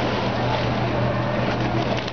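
A boat engine drones steadily with a low hum, over choppy water lapping and wind.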